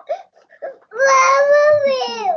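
Toddler crying: a few short sobs, then about a second in one long high wail that falls away at the end.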